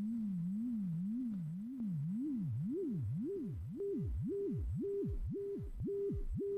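Elektron Digitakt playing a pure test tone whose pitch is swept up and down by a triangle-wave LFO about twice a second. As the LFO depth is turned up, the sweep widens from a slight wobble to deep swoops, and the top of each sweep flattens out at one fixed pitch: the pitch modulation is saturating and clipping.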